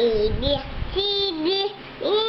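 A young girl singing two drawn-out notes, the second held longer and a little lower than the first.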